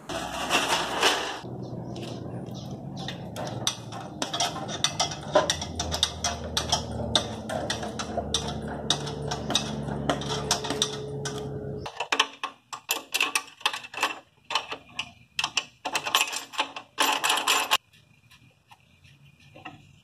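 Metallic clicking and clatter from a foot-pumped hydraulic scissor lift for motorcycles as it is worked, with a run of sharper, separate clicks in the second half.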